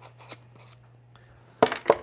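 A few faint, light clicks and taps as dried mint is shaken from a small spice jar, over a low steady hum. A man starts talking near the end.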